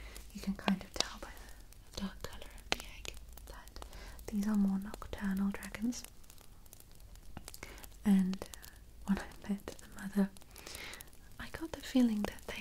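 Fingertips and nails tapping and scratching on the hard painted shell and glitter inlay of a handmade dragon egg prop, in sharp, irregular clicks close to the microphone. Soft whispered vocal sounds come and go in between.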